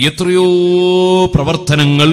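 A man's voice intoning in long, steady held notes, the chanted stretch of an Islamic preacher's sermon: one note held for about a second, a short break, then another held note near the end.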